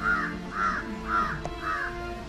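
A crow cawing five times in a row, about two calls a second, over faint background music.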